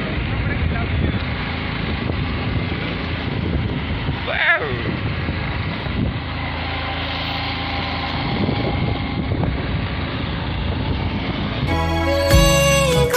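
Motorcycle riding at road speed: a steady engine and wind rumble on the microphone, with a short voice call about four seconds in. Music comes in just at the end.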